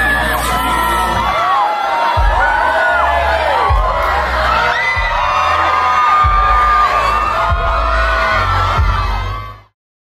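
Concert crowd screaming and cheering over a hip-hop beat with deep bass hits every second or so. Everything cuts off abruptly near the end.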